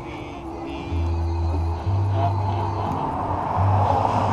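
Music with a deep bass line, its notes changing about once a second.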